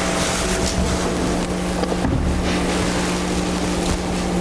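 Steady rushing hiss with a low hum under it, the room or ventilation noise of the hall, heard loudly in a pause between spoken phrases.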